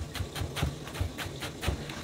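Chef's knife chopping napa cabbage on a plastic cutting board: a steady run of quick knife strikes, about four or five a second.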